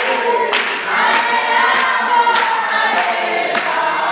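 Group kirtan: many voices chanting together over a harmonium, with mridanga drum, hand cymbals and hand claps keeping a steady beat of sharp strokes about every half second.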